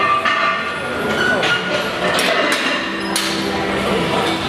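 Metal gym weights clanking several times, sharp knocks spread across a few seconds, over steady background gym noise with voices in it.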